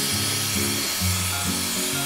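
Dyson Airwrap hot-air styler blowing a steady rush of air onto hair, over background music.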